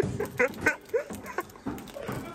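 Sneakers squeaking on a smooth floor during boxing footwork: about six short, high chirps in two seconds.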